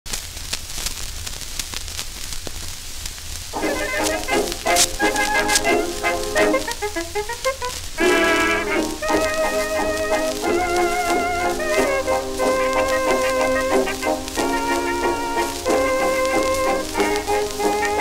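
Shellac 78 record of a 1920s dance orchestra playing a foxtrot: about three and a half seconds of surface hiss and crackle, then the band comes in. The sound is thin, with little bass or treble, under a constant crackle and a low hum.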